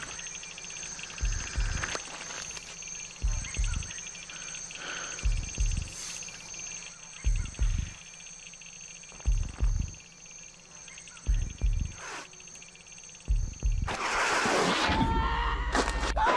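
Advert soundtrack: a deep double thump about every two seconds, like a slow heartbeat, over a steady high cicada-like buzz. About 14 seconds in, a loud rush of noise like surging water takes over.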